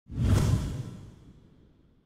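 Title-animation whoosh sound effect with a deep low boom, starting suddenly and fading away over about a second and a half.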